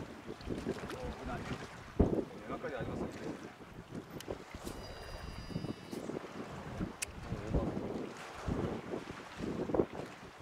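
Gusty wind rumbling on the microphone. Through it come a brief high whir from a spinning reel about five seconds in and a sharp click about seven seconds in, as the rod is cast.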